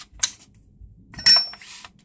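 Small hard clicks and a short clatter of tools being handled on the workbench: one sharp click about a quarter-second in, then a louder clatter with a brief metallic ring a little after a second in.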